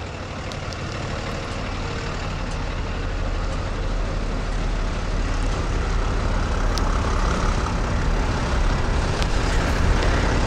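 A diesel engine idling with a steady low rumble, growing gradually louder.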